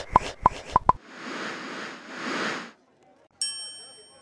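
Animated channel-logo sting: five quick popping blips in the first second, then a rising and falling whoosh, then a single bright chime about three and a half seconds in that rings and fades.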